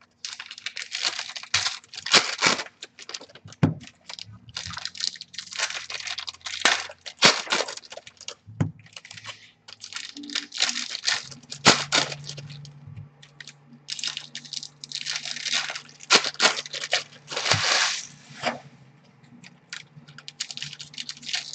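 Trading-card pack wrappers being torn open and crinkled by hand: an irregular run of short rustling tears.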